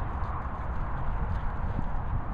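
Footsteps on grass: soft, irregular thuds and rustling over a steady low rumble.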